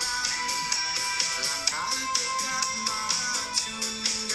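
A song with a steady beat playing from a smartphone's speaker held above a cardioid condenser microphone, picked up off-axis from above.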